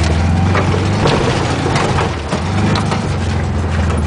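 1974 VW Super Beetle's air-cooled flat-four engine revving hard in first gear while the car spins out on dirt, the rear tyres scrabbling and throwing dirt with a gritty crackle over the steady engine note.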